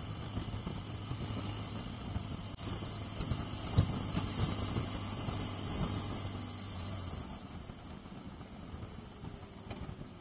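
BMW R1250GS boxer-twin engine running at road speed under wind rush on the helmet-camera microphone. About seven seconds in, the engine note and wind noise drop away as the bike rolls off the throttle and slows.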